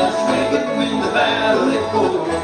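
Live bluegrass band playing an instrumental passage of a gospel song, with banjo, mandolin and acoustic guitar.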